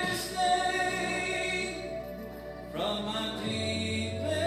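A man singing a worship song into a microphone over instrumental accompaniment, the bass moving to a new note about three and a half seconds in.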